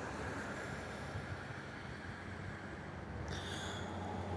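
Steady outdoor ambient noise, a soft low rumble with a hiss over it, with a brief higher hiss near the end.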